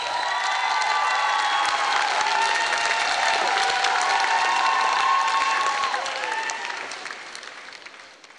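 Audience applauding, the applause dying away over the last two seconds.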